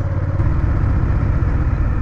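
Honda Rebel 1100's parallel-twin engine running steadily under way, heard from the bike together with wind and road rush.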